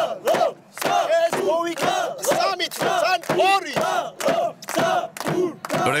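A group of football supporters shouting a rhythmic chant at close range, beaten out on a large bass drum, about two shouts and drum strokes a second.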